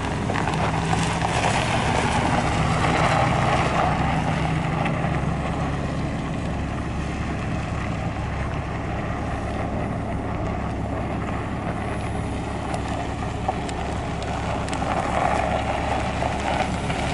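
GMC Sierra pickup running as it is driven slowly around a dirt lot, with a steady engine note and tyre noise. It is a little louder for the first few seconds, as the truck passes close.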